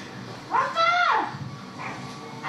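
A child shouting "Appa!" (Dad!) in one loud, high, drawn-out call that rises and then falls, about half a second in.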